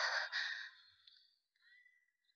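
A young woman's breathy sigh: an unvoiced exhale in two pushes that fades away within about a second.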